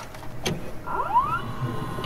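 Videotape-deck sound effect: a small tape-transport motor whirring over hiss, with a few whines gliding up in pitch about halfway through.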